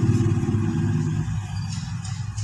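A running engine's low, steady drone. Its higher tones drop away a little past halfway, leaving a lower hum.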